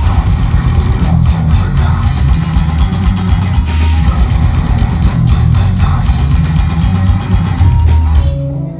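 Death metal band playing live at full volume: distorted electric guitar and bass guitar over fast, dense drumming.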